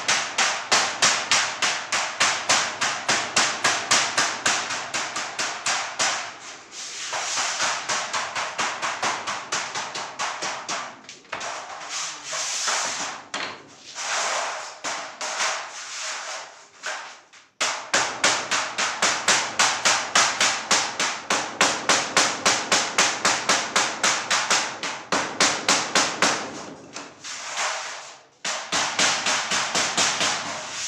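Hammer striking a steel sheet rapidly, about four sharp metallic blows a second, in long runs broken by a few brief pauses.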